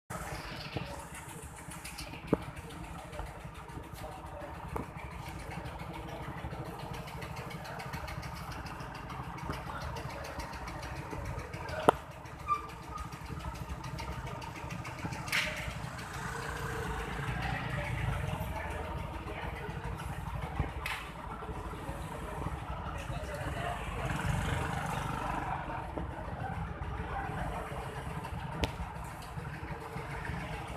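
Street ambience with a steady low rumble and the indistinct murmur of a crowd of voices, which swells in the second half. A few sharp clicks come about two seconds in and again near the middle.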